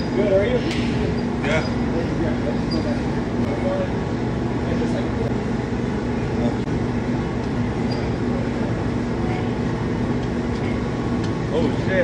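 Gym room ambience: a steady low hum under indistinct background voices.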